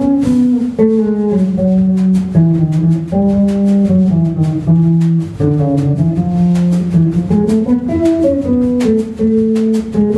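Electric bass guitar playing a melodic line of single plucked notes that step up and down, with light, regular cymbal ticks from a drum kit behind it.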